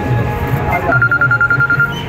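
Mobile phone ringing with a rapidly trilling electronic ringtone: one burst of about a second starting about halfway in, part of a repeating ring pattern.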